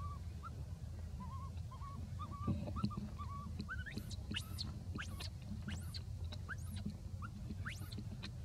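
Baby macaque crying: a run of short, wavering whimpers, then from about halfway a string of high, steeply rising squeals.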